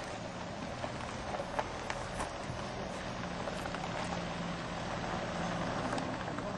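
A faint, steady engine hum, as of a motor vehicle some way off, under a haze of outdoor background noise, with a few light clicks and knocks scattered through it.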